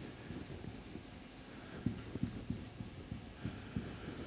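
Marker pen writing on a whiteboard: a faint series of short strokes and taps as a word is written out.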